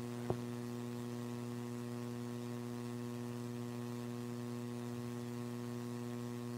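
Steady electrical mains hum in the sound system, with one short click about a third of a second in.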